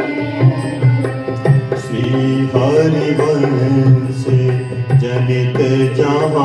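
Devotional hymn sung to harmonium and dholak: the harmonium's reeds hold steady chords while the drum keeps a beat, and a voice sings a drawn-out melody over them.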